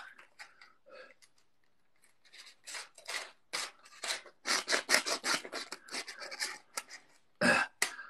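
A pencil being rubbed and scraped against a playing card held in a frame, in a quick series of short scratchy strokes that starts about two seconds in and runs for several seconds.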